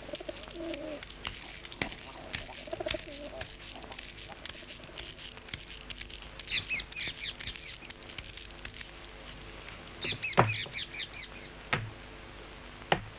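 Birds: soft low cooing in the first few seconds, then two quick runs of high twittering chirps. Two sharp knocks come near the end, the loudest sounds here.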